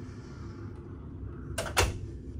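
A cabin door shutting: two sharp latch clicks about one and a half seconds in, the second the louder, over a steady low hum.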